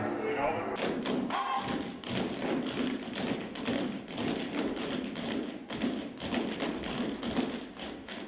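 Tap shoes of an ensemble of tap dancers striking a stage floor in rapid, rhythmic clicks, beginning about a second in after a brief stretch of music.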